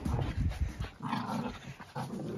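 Two small dogs play-fighting, with low growls and grunts.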